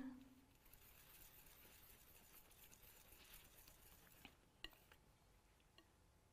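Near silence, with faint scraping of a palette knife mixing oil paint on a palette and a few light ticks of the knife in the second half.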